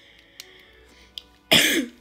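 A person coughs once, short and loud, about one and a half seconds in. Before it come a couple of faint clicks from the plastic floppy cube being turned in the hands.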